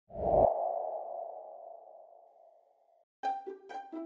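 A sudden deep hit with a ringing tone that fades away over about three seconds, an intro sound effect. About three seconds in, light music of short, quick, pitched notes begins.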